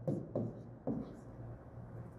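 Stylus writing on an interactive whiteboard's screen: faint, short tapping and scratching strokes, most of them in the first second.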